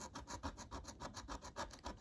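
Small metal scraper rubbing the scratch-off coating from a lottery scratch card in quick, even, faint strokes.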